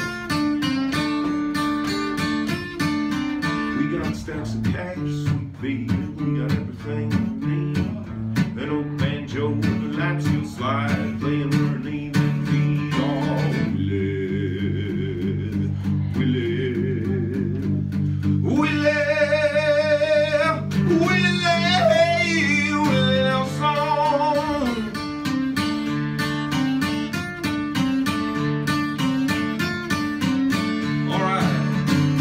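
Acoustic guitar played live, picked and strummed, with a man singing over it; the voice is strongest in the second half, with wavering held notes.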